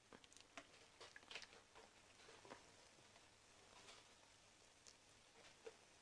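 Near silence with faint, scattered crackles and pops of bonda batter frying in a pan of hot oil, alongside soft wet sounds of batter being pinched off by hand.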